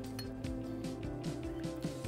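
Background music, with a couple of light metallic clinks as a half razor blade is handled and set into the steel arm of a hinged shavette razor.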